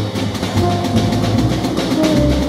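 Jazz trio playing live: a drum kit played busily with sticks, cymbals ringing under rapid strokes, over double-bass notes, with a long held saxophone note entering about half a second in.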